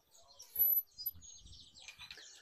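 Small birds chirping: a few short, very high-pitched notes, the clearest about half a second in and another near one second.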